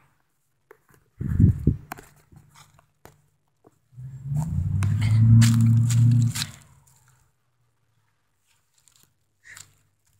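Rubbing, crunching and clicks of a handheld camera being moved about, with a low thump a little over a second in and a louder low rumble from about four seconds in, lasting about two and a half seconds.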